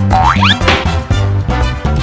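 Upbeat swing-style background music with an added cartoon sound effect: a quick rising boing-like glide in the first half second, then a brief noisy crash burst as the toy engine tips off the track.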